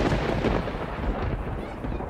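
A rumble of thunder, loudest at the start and slowly fading away.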